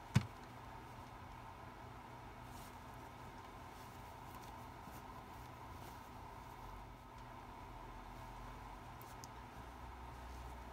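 Quiet room tone with a steady low hum, and one sharp click just after the start.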